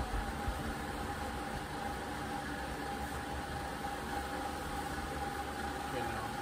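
Steady mechanical hum with a constant high tone running underneath, the sound of a motor or fan running, with no distinct events.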